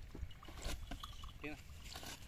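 Khillar bull grazing: a few short, crisp tears and crunches of grass over a low wind rumble on the microphone, with a brief human voice about one and a half seconds in.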